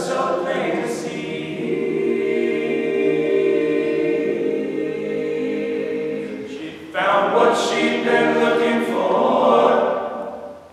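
Male a cappella group singing in close harmony, voices holding long sustained chords, swelling louder and brighter about seven seconds in.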